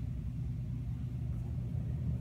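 Steady low background rumble with no distinct event.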